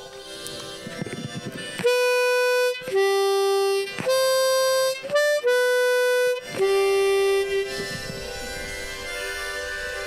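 Diatonic harmonica played into a handheld microphone: a slow phrase of about six held notes, mostly switching back and forth between two pitches, with one brief higher note in the middle. It starts about two seconds in, and the last note is softer.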